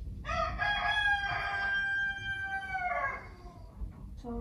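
A rooster crowing once: one long call of about three seconds that falls in pitch at the end.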